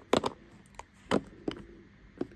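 Plastic ink pad cases clicking and knocking against one another as one pad is pulled out of a tightly packed box: a few short, separate clacks.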